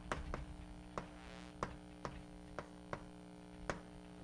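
Chalk writing on a blackboard: a run of sharp, irregularly spaced taps as the chalk strikes the slate, with a short scratch about a second in. A steady electrical hum sits underneath.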